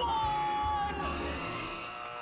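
Animated film soundtrack: a character's drawn-out yell, held steady for about a second and then fading, over background film music.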